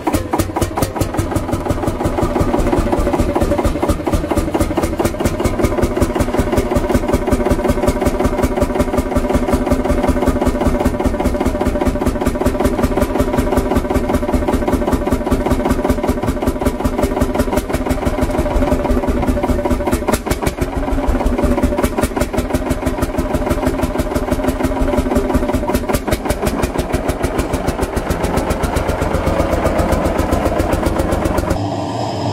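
Single-cylinder hot-bulb two-stroke engine of a vintage Lanz Bulldog tractor running with its even, fast beat of firing strokes, first standing and then pulling the tractor away.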